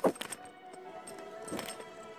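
Metal-on-metal clicks from a screwdriver levering the front disc brake caliper pistons back: a sharp clank at the start, a second right after, and a softer one about a second and a half in. Steady background music plays under them.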